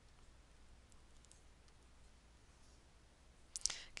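Near silence: quiet room tone with a few faint clicks about a second in and a sharper click shortly before the end.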